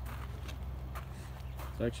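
Small submerged pond pump running with a steady low hum as it circulates the water in the tub.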